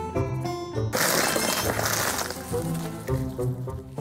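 Light background music with a glass-shattering sound effect about a second in, fading over a second or so before the music carries on.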